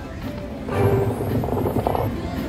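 Buffalo Chief slot machine's game music and sound effects as the reels spin in a free game, growing louder from under a second in.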